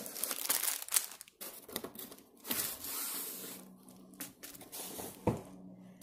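Plastic and paper packaging rustling and crinkling as a diamond-painting kit is unpacked from its box, with a single knock about five seconds in.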